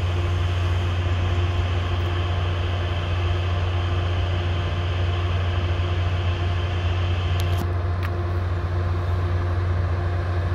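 Caltrain diesel push-pull commuter train standing at the platform, idling with a loud, steady low drone and a faint steady hum. A couple of faint clicks come about seven and a half to eight seconds in.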